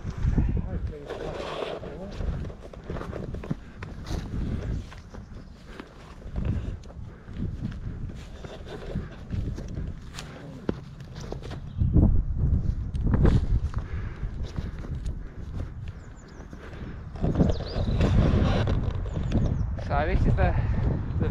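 Footsteps climbing through long grass up a steep slope, uneven steps and rustling, with heavy low rumbling of wind buffeting the microphone.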